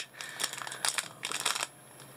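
Clear plastic wrapping around a bundle of bagged diamond-painting drills crinkling as it is handled, in irregular crackles that stop about a second and a half in.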